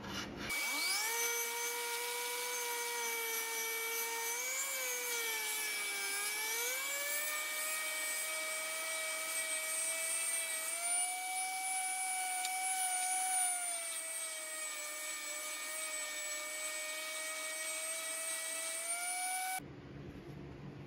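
SKIL electric random orbital sander running as it sands latex paint off a wooden board. It starts about half a second in and cuts off abruptly near the end. Its motor whine sags and climbs in pitch as it is pressed onto the wood and eased off, over a steady high whine.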